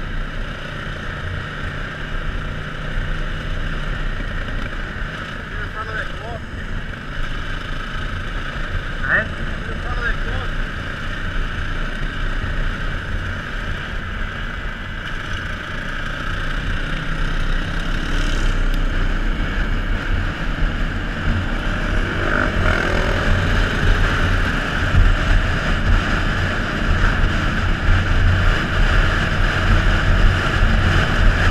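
Four-stroke single-cylinder trail bike engine running on the move, heard from the bike itself with wind noise on the microphone. It grows louder about halfway through.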